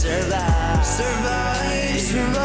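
A dark, cinematic-sounding song playing: a sung vocal line over drum hits, with deep bass notes that slide down in pitch, twice in quick succession about half a second in.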